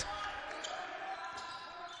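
Faint court sound from a basketball game: a ball being dribbled on a hardwood floor, with the steady background of a large indoor hall.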